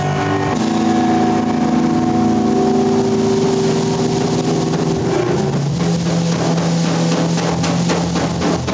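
Live rock band with electric guitars holding long sustained chords that ring out, the drums coming back in with regular hits about five seconds in.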